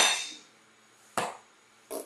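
A single sharp knock of glassware against a hard surface about a second in.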